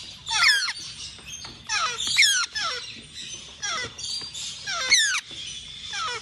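Young African grey parrot chicks calling: a string of high squeaky calls, each falling steeply in pitch, coming about once or twice a second.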